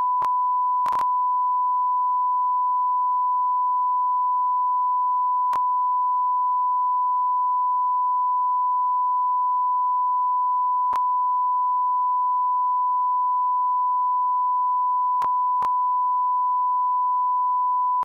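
Steady 1 kHz sine test tone, the broadcast line-up tone that runs with colour bars when no programme is on the feed. It holds one pitch at a constant level throughout, with a few very faint clicks now and then.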